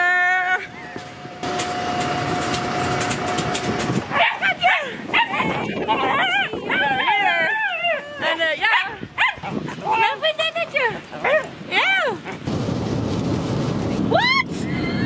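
Women's excited high-pitched squeals and laughter as they greet each other, many quick rising and falling cries over several seconds. Before this there is a steady hum with a faint steady tone. Near the end there is an even low rumble.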